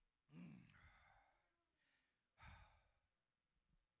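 Near silence broken by two faint sighing breaths from a man close to a handheld microphone, one near the start and a shorter one past the halfway point.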